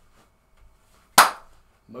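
A single sharp hand clap about a second in, the loudest sound here, dying away quickly.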